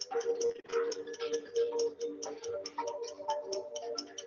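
Quiz-game countdown music: a light tune over a fast, steady ticking beat, playing while the answer timer runs down.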